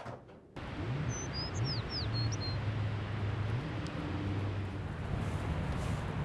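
A quiet start gives way, about half a second in, to outdoor ambience: a steady low rumble like distant traffic, with a bird chirping several times in quick succession around one to two and a half seconds in.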